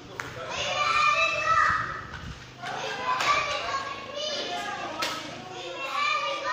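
Children's voices shouting and chattering in play, high-pitched and in several loud bursts.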